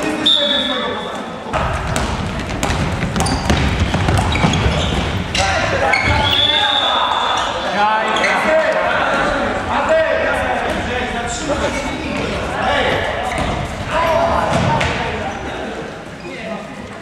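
Handball game in a sports hall: the ball bouncing on the court floor among players' shouts and running feet, all echoing in the hall.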